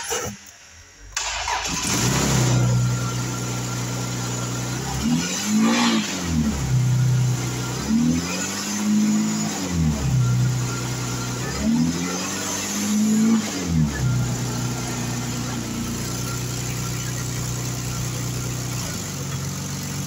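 2000 Honda Passport's V6 engine starting about a second in and settling to idle, then revved three times, each rev rising and falling smoothly back to a steady idle.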